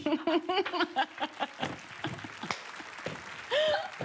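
Excited laughter from the contestants, a pulsing "ha-ha" voice in the first second, then light applause with scattered claps and a short exclamation near the end.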